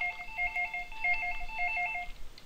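Telephone ringing: an electronic warbling ring, two pitches alternating quickly back and forth.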